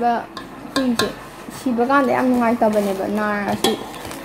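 A woman talking in short phrases, with a few sharp clicks and taps in the pauses.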